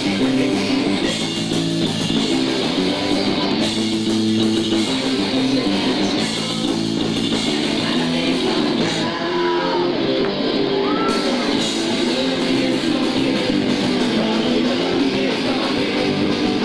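Punk rock band playing live: electric guitar and bass guitar over drums, steady and loud.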